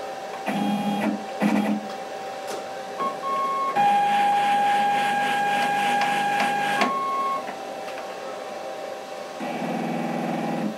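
CNC router's stepper motors driving the axes: a couple of short whirring moves in the first two seconds, then a longer, louder steady whine from about four to seven seconds, and another move starting near the end.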